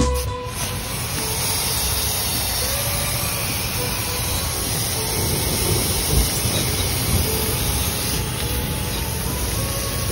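Aerosol cleaner can spraying through a thin extension straw onto an engine oil cooler, a steady continuous hiss as old oil and grime are blasted off. It begins just after a short bit of guitar music stops.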